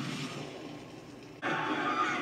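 A rumbling roar of fire from a TV episode's soundtrack, slowly dying away. About one and a half seconds in, it breaks off abruptly into a louder, noisier new scene sound.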